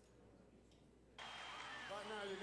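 Near silence, then a little over a second in the sound jumps up suddenly with a steady hiss, and a voice starts near the end.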